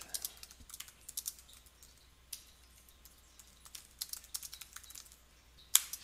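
Typing on a computer keyboard: a run of soft, irregular keystrokes, with one louder click near the end.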